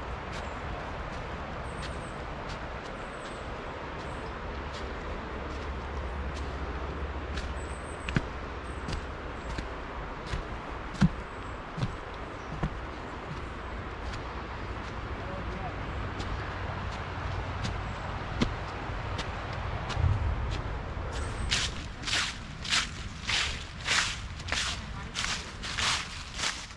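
Steady rush of river rapids over rocks, with scattered sharp clicks and taps. Near the end comes a run of about ten evenly spaced sharp sounds, roughly two a second.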